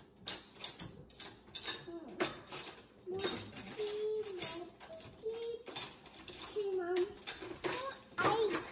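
Light clinks and clatter of cutlery on dishes, with short high-pitched wordless vocal sounds in between.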